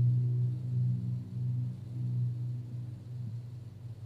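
A low, steady droning tone with a few overtones above it, slowly fading and wavering in level.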